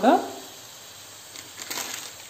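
Onions and tomatoes frying in oil in a non-stick pan, a quiet steady sizzle with a few faint crackles near the end.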